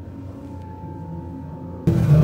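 Faint eerie background music: a low drone with one high tone held steady. Near the end a loud, rough sound cuts in, edited in as a ghost answering "hello".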